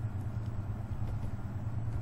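A steady low hum with faint background noise.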